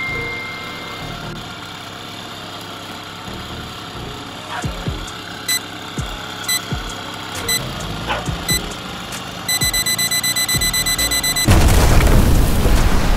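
Background music with steady tones and scattered short beats, then a fast run of even beeps. Near the end comes a loud splash and rush of water as a diver drops into a canal.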